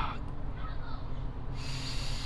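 A man's breathy exhale, starting about one and a half seconds in, over a steady low hum.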